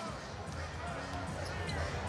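Arena sound during live basketball play: steady crowd noise with a ball being dribbled on the hardwood court, and faint music over the arena PA.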